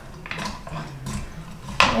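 A wooden spoon muddling and stirring cut fruit in a glass pitcher of sangria: quiet, scattered knocks of spoon and fruit against the glass.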